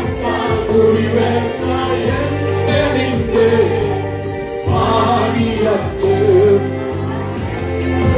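A group of voices singing a gospel worship song together over sustained instrumental accompaniment, with a steady beat.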